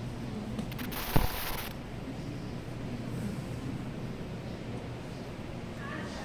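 Steady low hum of an indoor exhibition hall. About a second in comes a sudden sharp knock with a hiss lasting under a second.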